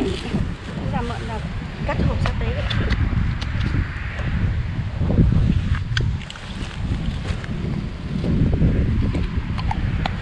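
Wind buffeting the microphone in the open, a steady low rumble, with a few light clicks and faint voices.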